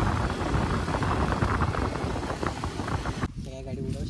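A KTM RC sport motorcycle being ridden at road speed: its engine running under wind rush on the microphone. The noise cuts off abruptly about three seconds in, and a man's voice follows.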